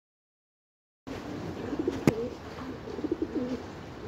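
Silence for about the first second, then pigeons cooing repeatedly over a steady background hiss, with one sharp click about two seconds in.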